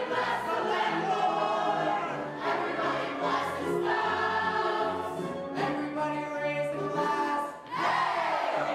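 A full cast of stage-musical performers singing together as a chorus, many voices at once.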